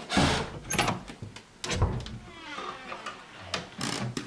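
A wooden door being handled and opened: a few clicks and knocks, and a wavering creak about halfway through.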